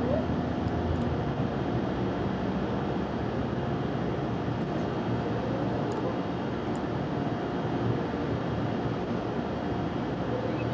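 Steady outdoor background noise, a low rumble with hiss at an even level, with a few faint small ticks.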